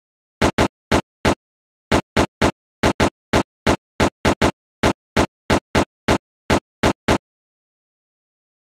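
Typing sound effect: about twenty-two sharp key clicks at an uneven typing pace, one for each letter of a web address appearing on screen. The clicks stop about a second before the end.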